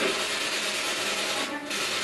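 Steady hiss of radio static from a spirit box sweeping through stations, with a brief drop in the noise about one and a half seconds in.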